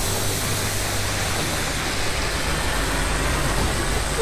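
Steady rushing sound effect of a magical energy beam: a dense, even noise with a low hum underneath, holding level throughout.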